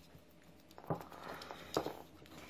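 A few light knocks and taps from plastic fishing-line spools being handled as the line between them is pulled taut in a knot-strength test.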